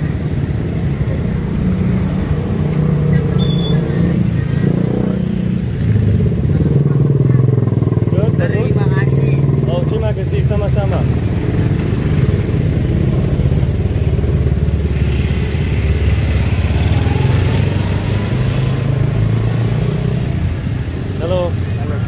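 Small motorcycle engine pulling an odong-odong passenger trolley, running steadily as it rides along, with a few voices over it.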